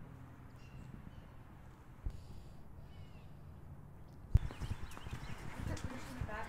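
Outdoor background with a low steady hum and a few faint, short high chirps. About four seconds in, a sudden sharp knock, after which the background turns louder and noisier with scattered low thuds.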